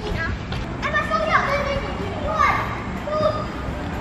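Young children's voices calling out and chattering in short, high-pitched bursts, about a second in, again midway and once more near the end.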